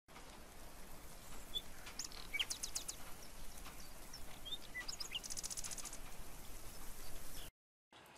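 Outdoor ambience with wild songbirds chirping: scattered short chirps and quick trills, and a rapid high trill about five seconds in. The sound cuts off suddenly just before the end.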